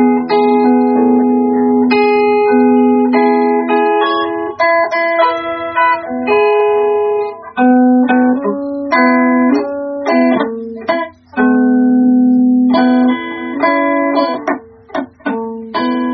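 Instrumental guitar music: plucked single notes and chords, with a couple of short breaks in the second half.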